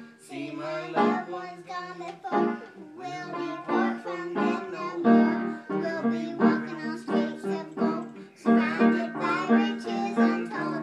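A young girl singing a song, with music playing under her voice.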